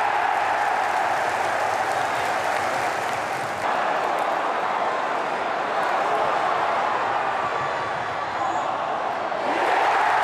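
Football stadium crowd cheering a goal: a steady wash of crowd noise, with an abrupt change about three and a half seconds in where the footage cuts to another match.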